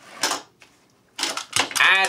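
Brief clattering clicks of a small toy robot being knocked across a wooden tabletop arena: one short rattle just after the start, then a quick cluster of clicks about a second in.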